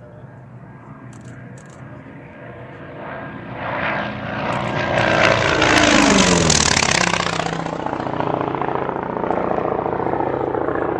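An aircraft makes a fast, low pass. Its engine sound swells over a few seconds, peaks past the middle, then drops in pitch as it goes by and trails off into a steady drone.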